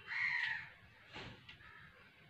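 A bird's single harsh call, about half a second long and slightly falling in pitch, followed by a fainter short sound just after a second in.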